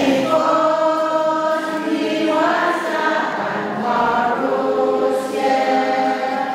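Two women singing a hymn together from hymnbooks, holding long sustained notes that step from pitch to pitch about once a second.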